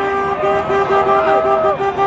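Car horns honking in the street. One horn sounds in quick repeated beeps, about five a second, with other higher horn tones over it.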